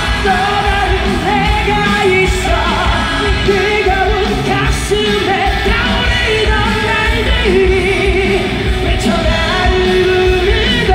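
Live concert music: a singer over a loud band with heavy bass, filmed from the arena audience.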